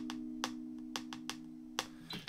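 A Fender Stratocaster electric guitar played through a small Blackstar amp, one held note or chord ringing out and slowly fading. Several sharp, irregular clicks sound over it.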